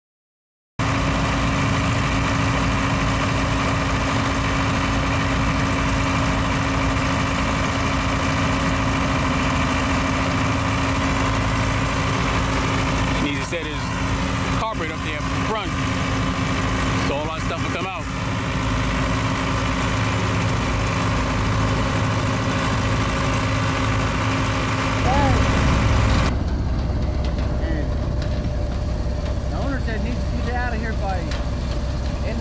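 Engine running steadily with a constant hum, with short bursts of voices in the middle. About 26 seconds in it cuts to a different, deeper and lower engine rumble.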